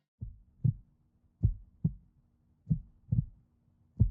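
Heartbeat sound effect: low double thumps, lub-dub, a pair about every one and a quarter seconds, over a faint steady low hum.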